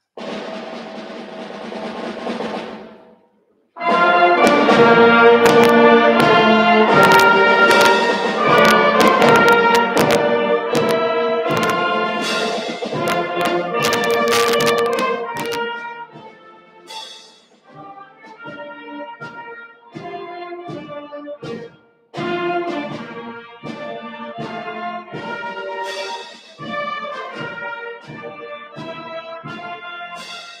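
High school concert band of woodwinds and brass playing with percussion. A softer held chord opens, breaks off after about three seconds, and the full band comes in loud with sharp percussion strikes. After about sixteen seconds it drops to quieter, shorter, detached notes.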